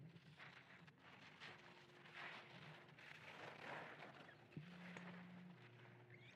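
Faint swishes of a sit-ski's edges carving and scraping on the snow, coming and going several times over a low steady hum.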